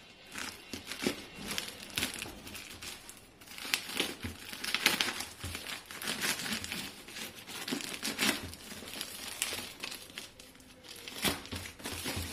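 Plastic courier mailer bag crinkling and tearing as it is slit with a folding knife and ripped open by hand, in uneven spurts of crackling, loudest around the middle.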